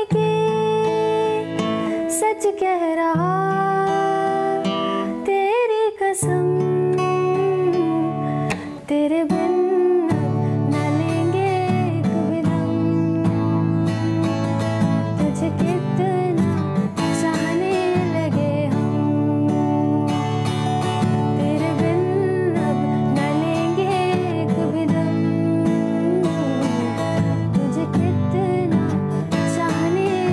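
A woman singing a Hindi film song to her own steel-string acoustic guitar: the guitar is picked finger-style at first, then strummed steadily from about ten seconds in as the chorus comes.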